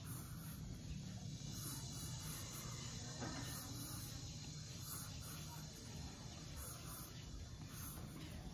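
Faint pencil strokes scratching across paper, one freehand line after another, over a steady low hum.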